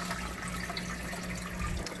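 Water running steadily through an aquarium filter box, a continuous trickling and splashing with a faint steady hum beneath it.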